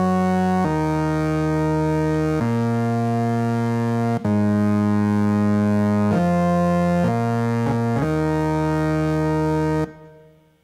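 Electric keyboard playing a solo intro of held chords. The notes sustain without fading and the chord changes every one to two seconds, with a brief break about four seconds in, then stops suddenly just before the end.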